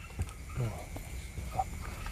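A faint, brief human voice over low steady background noise.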